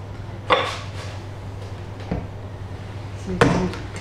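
Kitchenware knocking on a hard stone worktop: a sharp knock about half a second in as the metal soup pan is put down, a duller knock about two seconds in, and a clatter near the end as a spoon is picked up to stir.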